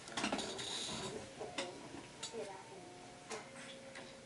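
Sharp clicks and taps from handling a Samsung Galaxy S4 smartphone in the hands: a quick cluster of clicks just after the start, then single clicks spaced out through the rest.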